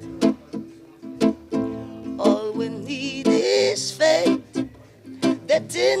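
Classical acoustic guitar strummed in short, separated chords, with a man's voice singing briefly over it in the middle.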